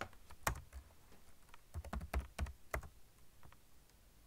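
Typing on a computer keyboard: irregular keystrokes, sparse at first and coming in quicker clusters through the middle.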